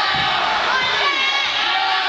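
Crowd of spectators and teammates shouting at once, many voices overlapping, in a gymnasium.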